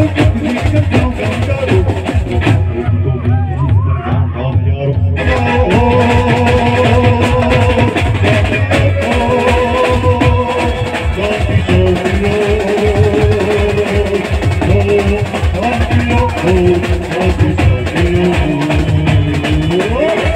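Live band music: vocals into a microphone over keyboard and several drummers playing sets of tom-style drums with a steady beat. The sound thins briefly about three seconds in, and the full band returns about five seconds in.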